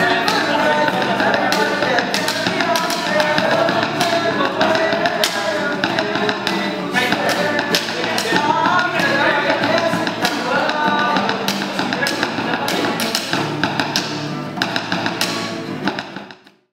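Informal acoustic jam: an acoustic guitar is strummed while drumsticks beat a rhythm of sharp taps on a hard flight case, and voices sing the melody over it.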